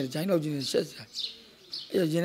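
A man speaking Burmese into a close microphone, trailing off into a short pause about a second in before going on.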